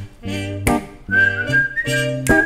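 A whistled melody comes in about a second in, a few held notes stepping upward, over a looped guitar part of repeated chords with sharp, strummed attacks.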